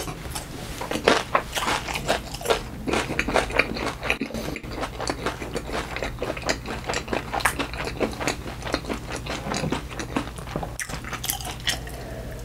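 Close-miked chewing of a small yellow pepper, with dense, irregular wet crunches and mouth clicks.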